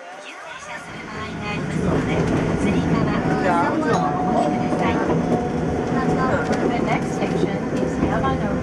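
Keifuku Randen Mobo 600 tram car running on its track, its running noise of motors and wheels on rails growing louder over the first two seconds as it picks up speed, then holding steady with a low hum and a steady whine.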